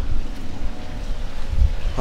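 Wind buffeting the microphone: an irregular low rumble, strongest about a second and a half in.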